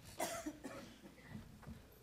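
A person coughs once, a short burst about a quarter second in, followed by a few faint low knocks.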